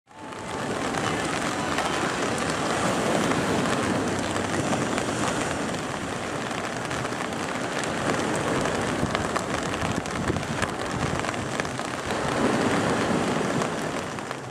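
Steady rain falling on wet paving, fading in at the start and dying down near the end.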